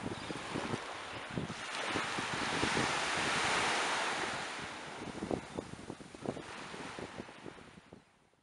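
Sea surf washing on the shore, swelling to a peak a couple of seconds in and then easing, with wind buffeting the microphone in irregular low thumps. The sound fades away near the end.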